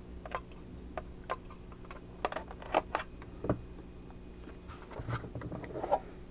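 A clear plastic display case being handled and opened, with scattered light plastic clicks and taps and a few louder knocks in the middle and just before the end.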